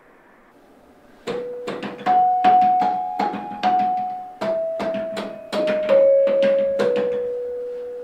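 A slow melody played on a carillon baton keyboard: more than a dozen struck metal notes, each ringing on and fading, starting about a second in.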